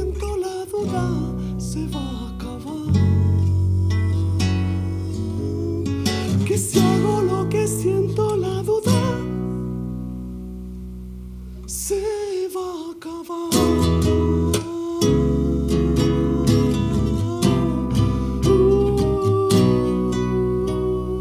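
Live music on a nylon-string classical guitar, strummed and plucked, over deep electric bass notes. It eases into a softer, sparser passage about ten seconds in, then the strumming picks back up.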